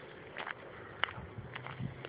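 A few light footsteps and scuffs on rocky ground and rough stone steps.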